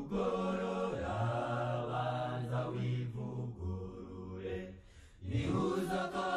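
Slow, chant-like vocal music with long held notes over a low sustained tone. It drops away briefly near the end, then comes back.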